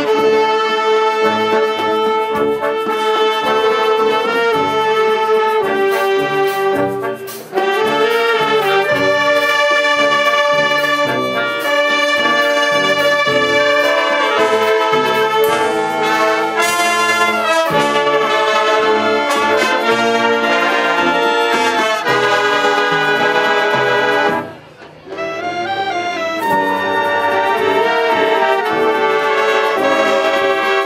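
A wind band of flutes, clarinets, saxophones, trumpets, trombones and euphonium playing sustained chords, with two short pauses between phrases, about seven seconds in and about twenty-five seconds in.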